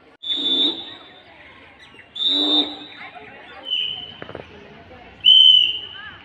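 A whistle blown in four short, high-pitched blasts about a second and a half apart, the last one the loudest. They serve as drill signals to students lined up in rows.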